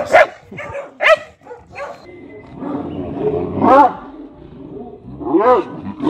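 Dog barking in several separate bursts, the loudest and longest about halfway through, another near the end.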